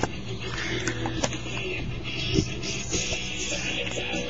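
Music with guitar plays steadily, with a few light knocks and clicks from the camera being handled and repositioned.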